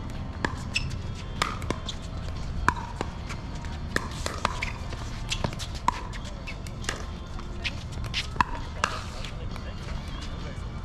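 Pickleball paddles striking a hard plastic ball and the ball bouncing on the court during rallies: sharp, hollow pops at irregular intervals of about half a second to a second.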